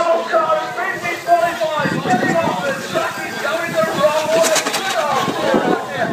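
Voices talking indistinctly, with a rougher rushing noise joining in from about two seconds in.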